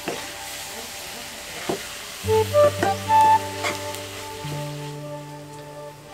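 Stir fry sizzling in a steel pan over a wood fire, with a few clicks of the spoon against the pan as it is stirred. Background music comes in about two seconds in.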